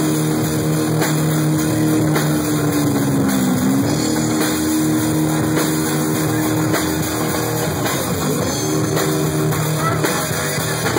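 Amplified electric bass solo played live: long held notes that twice dip in pitch and come back up, once a few seconds in and again near the end.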